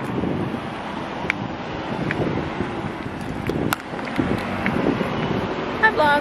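Wind buffeting the camera's microphone in an uneven rumble, with a few light clicks.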